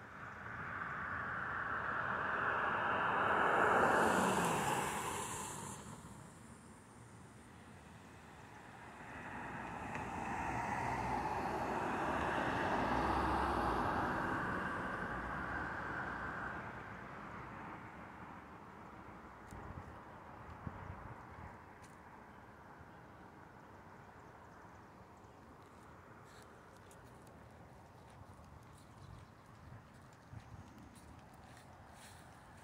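A vehicle passes close by: its tyre and engine noise swells, peaks about four seconds in with a falling pitch, and fades. A second, longer swell of rushing noise with some low rumble comes and goes from about nine to seventeen seconds, then steady faint outdoor background.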